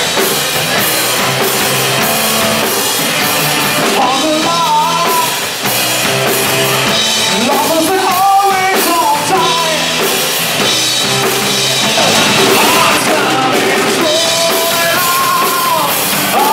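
A live rock band playing, with drum kit, electric bass and electric guitar, and a man singing lead at times over it.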